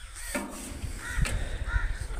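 Two short caw-like animal calls, one a little over a second in and one near the end, over low rumbling outdoor background noise.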